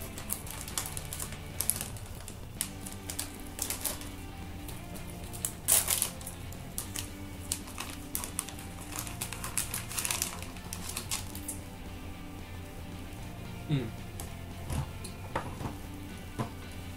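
Thin plastic snack wrapper crinkling and crackling in the hands as it is torn open and peeled back, in many short irregular crackles, with louder bursts about five and ten seconds in. Background music plays steadily underneath.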